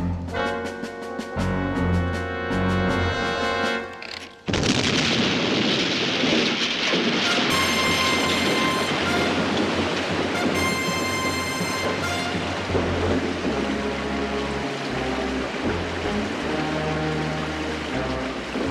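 Dramatic music, then about four and a half seconds in a sudden loud explosion as an earth dam is blown up, followed by a long steady rushing noise of the blast and released water running on under the music.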